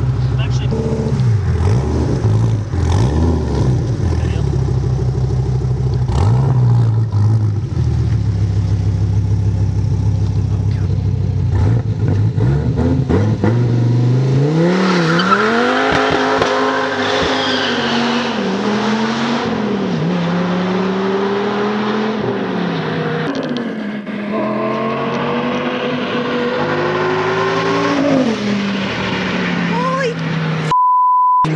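Dodge Viper ACR's V10 engine idling steadily, then revved and launched hard at about 14 s, accelerating up through several gears, its pitch climbing and dropping at each shift.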